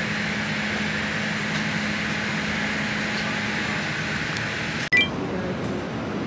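Airliner cabin noise: a steady, even hiss of air and engines with a faint low hum. Near the end it breaks off with a click into a different, duller room ambience.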